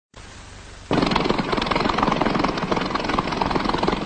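Propeller aircraft engines running steadily, cutting in abruptly about a second in over the faint hiss of an old film soundtrack.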